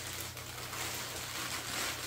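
Clear plastic packaging bag rustling and crinkling as a metal tripod is handled inside it, over a steady low hum.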